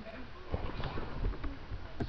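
A dog's paws thumping and scrabbling on soft couch cushions as it spins around chasing its tail: a quick, irregular run of dull thumps that starts about half a second in.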